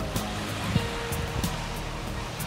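Background music with a light, regular beat over a steady wash of noise from the surf.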